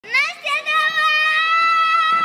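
A high voice holding one long, steady note after a short wavering rise at the start.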